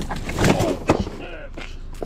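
A sharp knock a little under a second in as packages are handled on a folding hand truck and set down on concrete, with brief wordless voice sounds around it.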